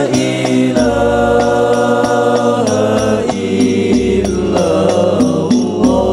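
Group of male voices singing an Islamic sholawat in unison, holding long drawn-out notes that slide to a new pitch every second or two. Underneath runs a light, even beat from Al-Banjari rebana frame drums.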